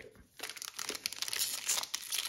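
Foil wrapper of a collector booster pack crinkling as it is picked up and handled, starting about half a second in as an irregular crackle.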